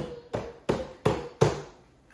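Five sharp knocks in an even rhythm, about three a second, each with a short ringing tone, stopping about a second and a half in.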